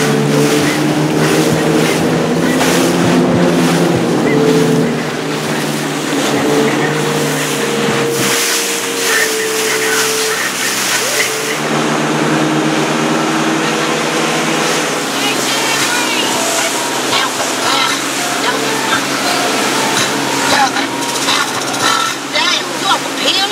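Motorboat engine running under way, with water rushing and splashing against the hull.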